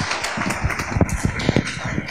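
Audience applauding, a dense crackle of clapping mixed with irregular low knocks and thumps of people moving about in wooden lecture-hall seats.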